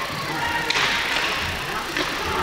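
Ice hockey arena during live play: a steady wash of crowd noise with skates and sticks on the ice, and a brief louder rush of hiss a little under a second in.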